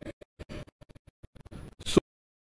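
Glitching broadcast audio: a speech feed breaking up into rapid, stuttering scratchy fragments, with a louder burst near the end.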